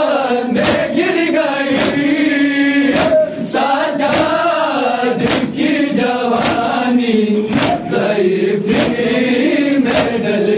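Men's voices chanting an Urdu noha lament in unison, punctuated by loud, sharp chest-beating slaps (matam) from the group, falling together roughly once a second.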